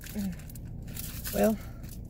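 Clear plastic packaging crinkling as a small notepad is handled and worked loose from its sleeve.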